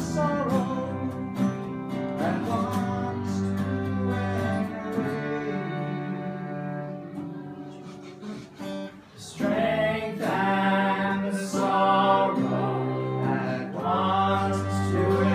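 Small acoustic ensemble of two strummed acoustic guitars, violin and bowed cello playing a slow folk-style piece. After a brief quieter moment about two-thirds of the way in, a group of young voices comes in singing over it.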